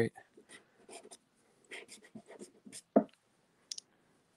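Soft pastel stick scraping across a pastel board in a series of short, faint strokes, with one louder stroke about three seconds in.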